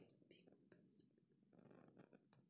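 Near silence: faint room tone with a few small clicks.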